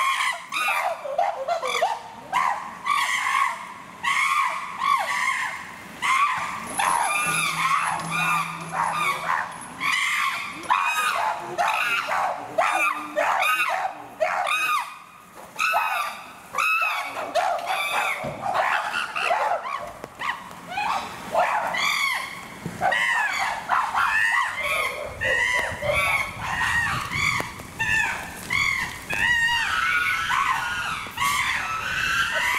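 A group of chimpanzees screaming and calling over one another in an excited commotion, a continuous run of loud, high cries that rise and fall in pitch.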